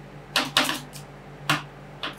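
Metal spatulas chopping ice cream on a steel cold plate: sharp clacks, a quick pair about a third of a second in and another at one and a half seconds, with a steady low hum beneath.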